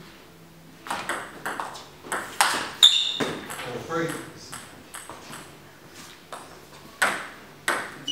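Table tennis rally: quick sharp clicks of the ball off bats and table, in a run of about a dozen strikes, stopping after about three seconds. A brief voice follows. Near the end come two more clicks of the ball, well apart.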